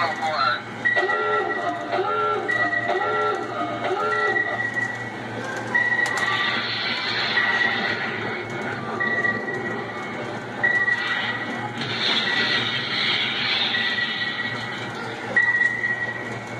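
Electronic sound effects from a 2005 RG Mitchell 'Captain Nemo' coin-operated submarine kiddie ride, running with its panel lights on. Short high beeps repeat about once a second, over a steady low hum, with a warbling effect repeated four times in the first few seconds.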